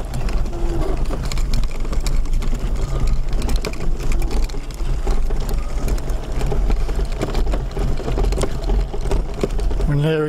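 Powered wheelchair driving over a rough dirt path: a steady low motor hum with constant rattling and knocking as it jolts over the bumpy ground.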